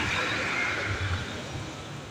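Refuse collection truck running close by: a low engine rumble with a steady hissing noise above it, slowly growing quieter.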